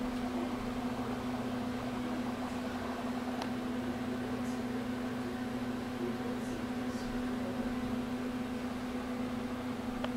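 A steady low mechanical hum with an even hiss behind it, unchanging throughout, with a few faint short high ticks in the middle.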